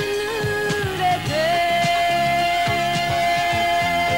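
A Japanese song: a woman singing over band accompaniment, with one long note held steady from about a second in to the end.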